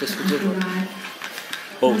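Dishes and cutlery clinking with a few short clicks, over people talking and a steady low hum; a man's voice comes in near the end.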